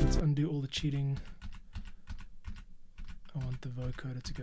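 Music playback cuts off just after the start, followed by irregular clicking of a computer keyboard, with a few quiet bits of voice among the clicks.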